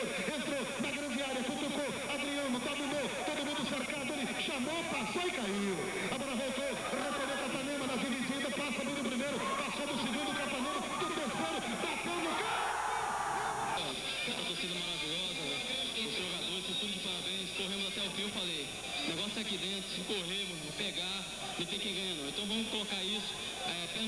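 A man's voice talking throughout, football broadcast commentary, over a steady background haze. The background changes abruptly a little before halfway through.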